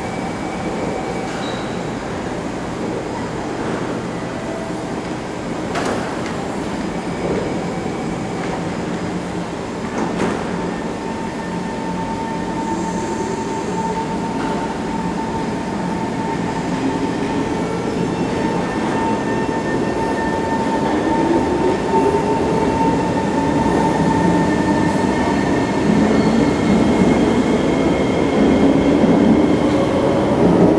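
SMRT C151 metro train at an underground platform: doors shutting with a couple of knocks in the first ten seconds, then the train pulling away, its traction motors whining in repeated rising glides as it gathers speed, growing louder toward the end.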